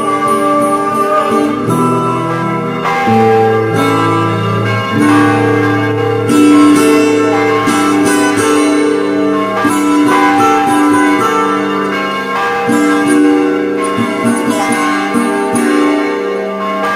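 Instrumental acoustic guitar music with ringing bell tones layered in, the notes held and changing every second or two.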